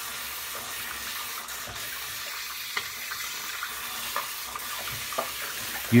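Tap water running into a bathroom sink: a steady hiss, with a few faint clicks.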